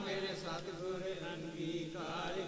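Sikh devotional hymn singing (kirtan) in a quieter stretch between sung lines: steady held tones carry on under faint, wavering chanting voices.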